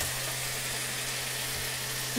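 Diced potatoes frying in mustard oil in a kadai, a steady even sizzle with a low steady hum beneath it.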